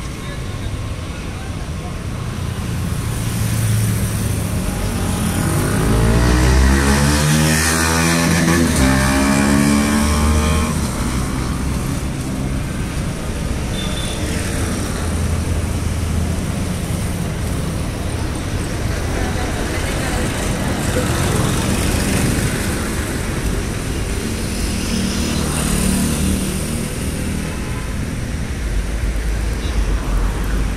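Roadside street traffic rumbling. One motor vehicle passes close about six to ten seconds in, its engine pitch sweeping as it goes by.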